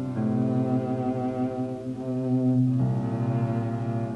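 Piano trio of piano, violin and cello playing classical chamber music: slow, held low notes that change about a quarter second in and again near three seconds.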